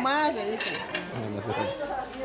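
People talking close by, with a brief clatter of kitchenware about half a second in.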